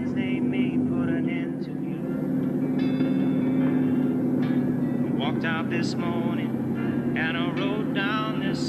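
A car engine drones steadily. Over it comes a voice in short bursts with no clear words, denser in the second half, and music plays underneath.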